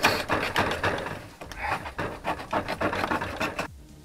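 Knife cutting and ripping through the surround and cone of a blown 15-inch Focus Acoustics subwoofer: a rapid run of scraping, tearing strokes that stops shortly before the end.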